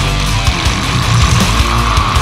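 Death metal: heavily distorted electric guitars and bass over drums, loud and dense throughout.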